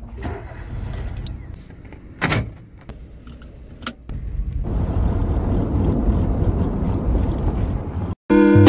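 A few clicks and knocks of keys and controls inside a car. About halfway through, the car's engine comes on and runs with a steady low rumble.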